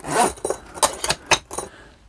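Metal zipper pulls and strap fittings on a Veto Tech Pac Wheeler tool backpack clinking and jangling as the bag is handled: a short rustle, then four or five sharp separate clinks.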